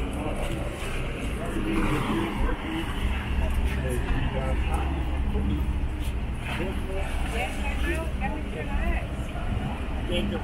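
People on the quayside talking over a steady low rumble, with choppy harbour water washing against the stone quay wall.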